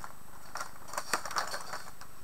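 Baby-wipe package being handled to pull out a wipe: several light clicks and rustles.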